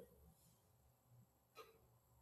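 Near silence: room tone in a pause between sentences, with one brief faint sound about one and a half seconds in.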